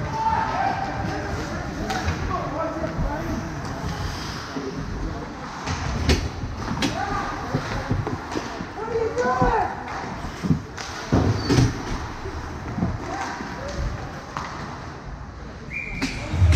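Live ice hockey play in an echoing rink: players' voices calling out, with several sharp knocks and slams from sticks, puck and boards, the strongest in the second half.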